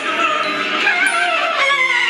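A man singing held, wavering notes into a handheld karaoke microphone, with music behind him.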